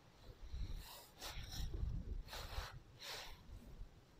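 A person breathing close to the microphone: three short, hissy breaths. A low rumble from the camera being handled runs under the first three seconds.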